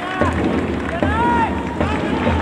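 Football stadium ambience: shouted calls that rise and fall in pitch over a steady bed of crowd noise, with a few sharp claps.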